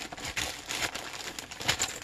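Plastic packaging crinkling and rustling as a camera bag is unwrapped, in irregular crackles with one sharper crackle about three-quarters of the way through.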